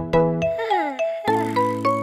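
Children's song music with a steady beat and sustained bell-like notes. Around the middle, a falling pitch glide sounds and the music breaks off briefly, then a new tune starts on the same beat.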